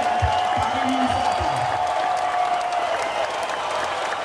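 Audience applause: a dense patter of many hands clapping. Under it runs a held musical note, which stops about three seconds in, and there are a few low thumps in the first second and a half.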